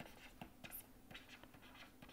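Faint scratching and tapping of a stylus writing on a tablet: a quick series of short pen strokes as a formula is written, over a faint steady low hum.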